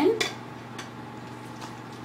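Quiet kitchen room tone with a low steady hum and a few faint light ticks as thick batter-like filling is poured from a mixing bowl into a pan.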